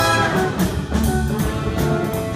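Live jazz big band playing: saxophones, trumpets and trombones holding chords together, with the drum kit's cymbals keeping a steady beat.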